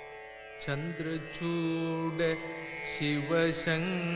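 Carnatic classical music: over a steady tanpura drone, a male voice comes in about half a second in, holding long notes that waver and slide in pitch.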